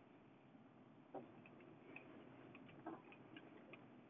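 Near silence inside a slowly moving car: a faint low cabin hum with a few soft, irregular clicks.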